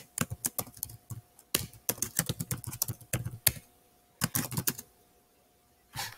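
Typing on a computer keyboard: a fast run of keystrokes for about three and a half seconds, then after a short pause a few more keystrokes.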